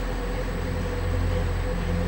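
Steady low drone of a ship's engine, with a faint steady whine above it.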